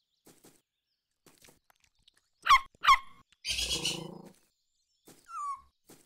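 Cartoon puppy sounds: two quick, loud, high yips a little under half a second apart about two and a half seconds in, then a rough, noisy sound lasting about a second, and a short falling whimper near the end.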